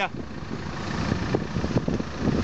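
A vehicle engine running steadily at idle, with a few faint clicks about halfway through.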